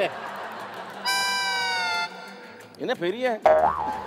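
Comedy sound effect: a held tone with many overtones, about a second long, sliding slightly down in pitch before it stops. It plays over background music, and a short burst of voice follows near the end.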